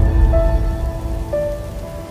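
Logo-intro music: long held synth notes that change pitch about once a second, over a low rumble and a rain-like patter, growing gradually quieter.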